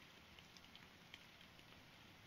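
Near silence: a faint steady hiss with a few soft, scattered ticks.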